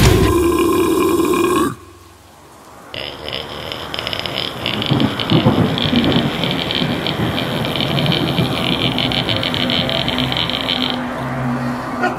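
Heavy metal band music rings out and cuts off under two seconds in. After a short lull, a long guttural belch-like vocal noise starts, over a steady high hiss that stops about a second before the end.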